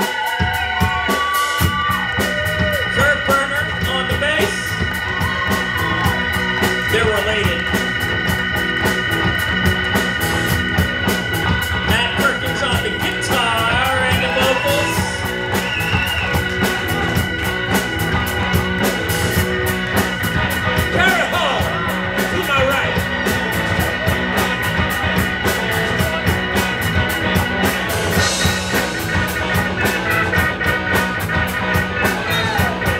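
Live rock band playing: held Hammond organ chords with electric bass, electric guitar and drums, the drums and bass coming in about a second and a half in, with wavering guitar or vocal lines over the top.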